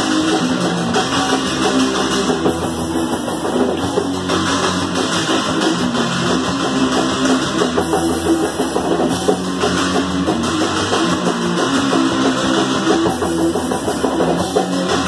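Punk rock band playing live and loud: electric guitar, bass and drum kit going without a break.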